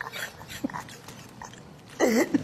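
A man's stifled laughter: quiet breathy gasps without a clear voice, much softer than the talk around it.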